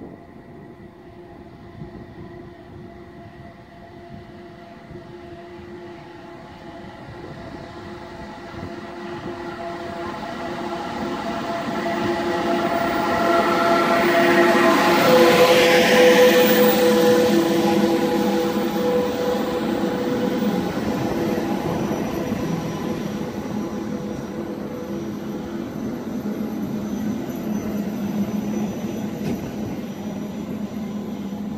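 An electric push-pull train, a Pesa Gama electric locomotive hauling double-deck coaches, approaches and runs past close by. It grows louder to a peak about halfway through as the locomotive goes by, with several steady whining tones over the rumble, then the coaches keep rolling past more quietly.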